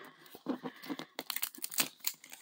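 The printed wrapper of a Zuru Mini Brands surprise ball being peeled and torn off by hand, in a series of short, irregular crackles and rips.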